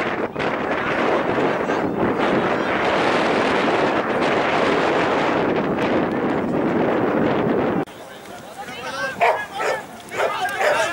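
Wind buffeting an outdoor camera microphone, a steady rushing that cuts off abruptly about eight seconds in. A few short, high-pitched calls follow near the end.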